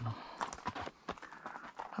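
Hooves of a ridden horse clip-clopping on the ground, a run of short, irregular hoof strikes.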